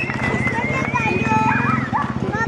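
Single-cylinder rally motorcycle engine running at a steady, rapid even pulse, with spectators' voices over it.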